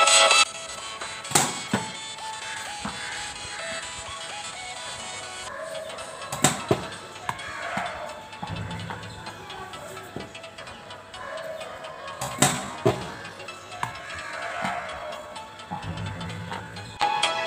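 Cricket bat striking a tennis ball three times, five to six seconds apart, each sharp crack followed by a lighter knock. Background music cuts off half a second in.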